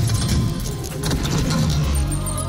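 Intro-animation sound effect: a dense run of metallic clinks and clatters over a low rumble.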